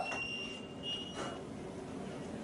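Two quiet, high, steady tones one after the other: the first for about half a second at the start, the second from about a second in for about half a second, over faint room noise.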